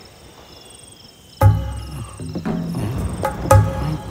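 Crickets chirping steadily in the night, then the film's background score comes in with a sudden deep hit about a second and a half in and a second hit near the end.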